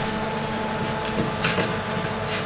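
Metal baking tray sliding and scraping on an oven's wire rack, with a sharper clatter about one and a half seconds in, over a steady fan hum.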